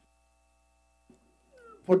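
A pause in a hearing-room microphone feed: near silence with a faint steady electrical hum, broken about a second in by a short faint sound and a faint rising squeak. Then a man's voice starts speaking at the end.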